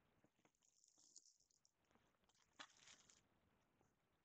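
Very faint handling noise as a hand picks up and moves a trading-card box: soft crinkly rustling in two stretches, with one light tap about two and a half seconds in.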